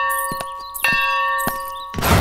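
A temple bell ringing: one stroke is still ringing at the start and a second stroke comes a little under a second in, each leaving a long, slowly fading ring.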